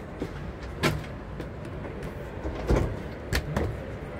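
A tall cabinet door in a camper van's kitchen being handled and opened: a few sharp clicks and knocks from its latch and panel, the loudest a little before three seconds in, over steady background noise.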